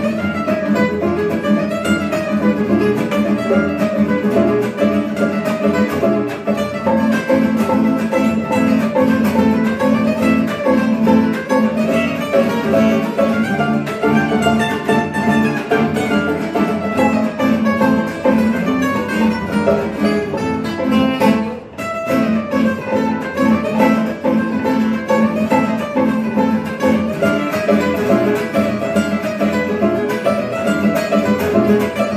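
Gypsy jazz trio playing a waltz on two acoustic guitars and a bowed violin, with guitar picking and violin lines over a strummed rhythm guitar. The music briefly drops out about two-thirds of the way through.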